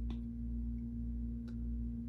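Steady low electrical hum with one even tone, room tone in a pause between words, with a faint click or two.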